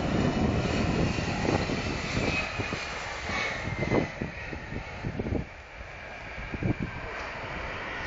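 Singapore Airlines Cargo Boeing 747 freighter's four jet engines during landing. A steady jet noise carries a faint falling whine and goes into reverse thrust on the rollout. The noise eases about five and a half seconds in.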